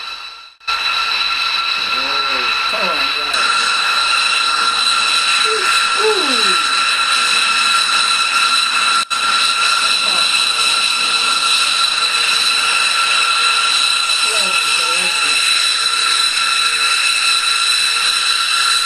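B-2 Spirit's General Electric F118 turbofan engines running on the ground: a steady high-pitched jet whine with several fixed tones. It comes in about half a second in, with one very brief dropout about halfway.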